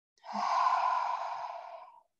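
A long audible exhale, a sigh of breath that begins sharply and fades away over nearly two seconds, breathed out while easing into a seated forward fold.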